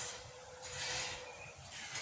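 Faint outdoor background hiss that swells softly for about a second near the middle.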